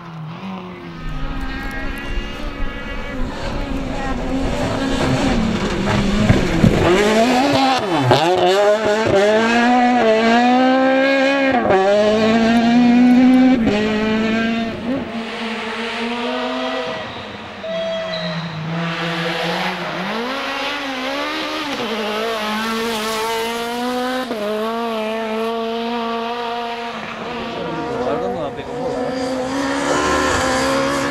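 Kit-Car and S1600 rally car engines at high revs on a stage. The pitch climbs and then drops sharply again and again as the cars shift gear and lift for corners, with a steadier note in the second half and revs rising again near the end.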